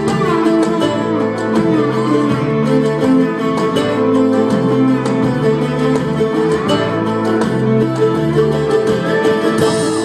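A live band playing an instrumental passage with no singing: strummed acoustic guitar and other plucked strings over a steady bass line and drums.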